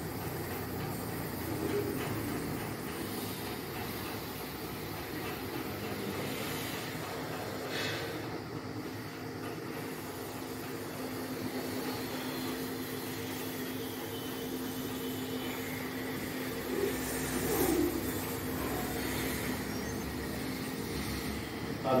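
Steady room noise with a low, even hum. A brief faint noise comes about eight seconds in and another near eighteen seconds.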